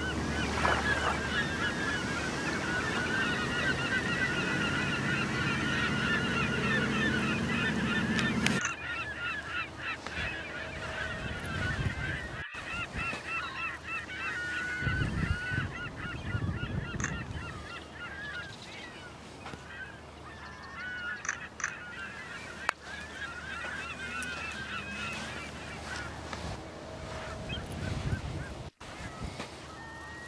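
A flock of birds calling over and over in short, wavy calls. For the first eight seconds or so there is wind and lapping-water noise under them, which drops away abruptly; the calls go on more faintly after that.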